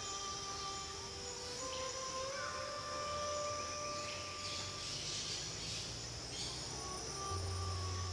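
Steady high-pitched chorus of insects in tropical forest ambience, with soft background music of long-held notes underneath.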